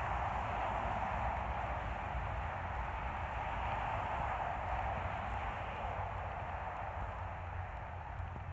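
Steady outdoor background noise: an even rush with a low rumble underneath, fading slightly toward the end, with no distinct knocks or footsteps.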